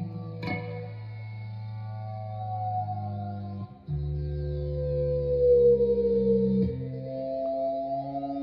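Electric guitar with a Sustainiac sustainer pickup, a chord struck once and then held notes ringing on without fading, kept vibrating by the sustainer. The notes change twice, and one slides gently down in pitch.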